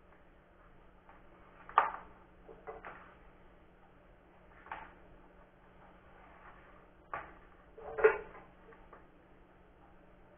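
Light knocks and clicks of small parts and tools being handled on a wooden workbench, about six separate taps, the loudest about two seconds in and again near eight seconds, over a faint steady hum.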